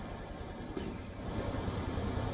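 A heavy truck's engine running as it drives, a steady low rumble with road noise, growing a little louder toward the end.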